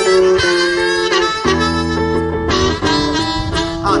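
Blues harmonica solo with long held notes, played close into a microphone, over a semi-hollow electric guitar accompaniment.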